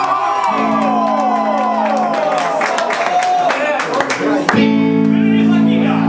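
Live ska band holding sustained chords while the audience shouts and whoops over them; a louder held chord comes in about four and a half seconds in.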